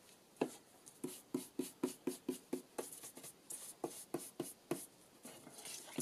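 Round ink blending tool dabbing ink onto the edges of a paper card: a run of quick soft taps, several a second, that thins out near the end.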